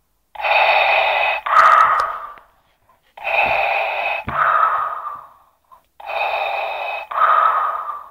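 Darth Vader's respirator breathing sound effect played from a talking plush keychain's voice box, set off by pressing its belly. It plays three matching inhale-then-exhale cycles about three seconds apart.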